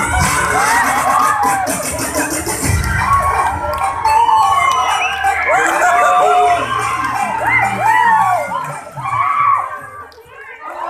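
Loud music over a sound system with a heavy bass, under a crowd of children and young people shouting, whooping and cheering. The music and the shouting drop away near the end.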